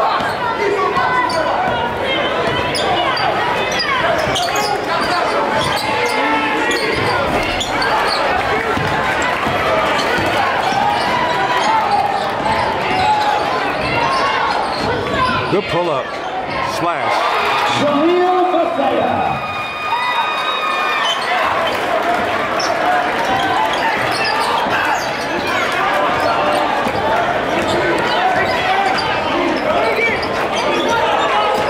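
Gym sound of a live basketball game: the ball bouncing on the hardwood court and players' sneakers squeaking, under steady shouting and chatter from a crowd in the stands.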